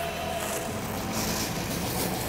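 Steady mechanical hum of an indoor ice arena, with a brief hiss of skate blades on the ice a little past a second in.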